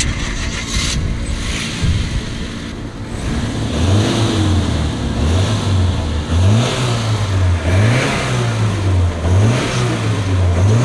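Nissan CA18i 1.8-litre single-cam four-cylinder engine of an R32 Skyline GXi starting up and running. From about four seconds in it is revved up and down again and again in short throttle blips.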